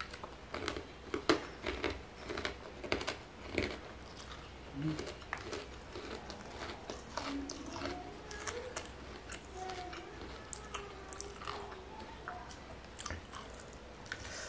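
Close-miked chewing of a handful of rice and meat, with dense sharp crunches in the first four seconds. From about six seconds in, the chewing goes on under a wavering closed-mouth hum.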